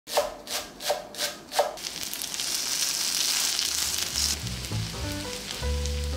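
Five quick knocks, then squid pancake batter sizzling as it fries in oil in a pan. Music with a bass line comes in about four seconds in as the sizzle stops.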